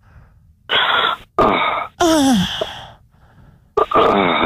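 A person gasping and moaning in mock sexual pleasure: three breathy moans in a row, the last one longer and falling in pitch, partly heard through a narrow telephone line. Speech starts just before the end.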